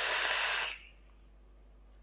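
An e-cigarette's rebuildable dripping atomiser being drawn on with the coil firing at 90 watts: a steady airy hiss of the inhale through the atomiser that stops about a second in.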